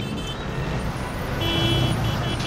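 Busy city street traffic noise, engines and crowd, with a vehicle horn tooting in the second half: one longer toot followed by short beeps.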